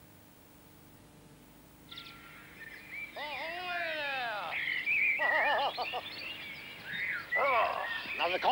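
About two seconds of faint hiss, then birds calling in several bouts: arching calls that slide down in pitch, a quick run of repeated short calls, and another bout near the end.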